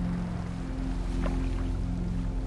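Calm ambient music of sustained low drone tones, with a gentle water sound layered into the ambience. A brief higher sound stands out a little over a second in.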